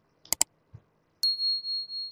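Subscribe-animation sound effect: a quick double mouse click, a lighter click, then a single high notification-bell ding about a second in that rings on and slowly fades.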